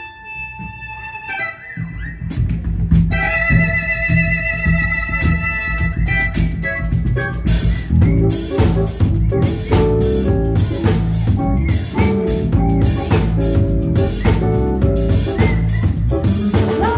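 Live band playing an instrumental passage: an electronic keyboard holds chords, joined about a second and a half in by bass guitar and drum kit, and the full band plays a busy groove from about eight seconds on.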